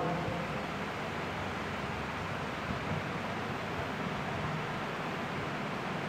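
Steady, even hiss of background noise, with no distinct sounds in it.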